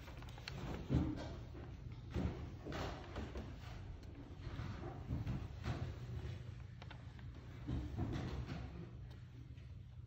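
Irregular wooden knocks and clunks as an organist sets up at the pipe organ's console, over a steady low hum.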